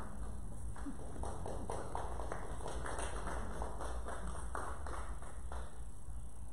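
An irregular run of sharp taps, about three a second, thickening about a second in and stopping shortly before the end, over a steady low hum.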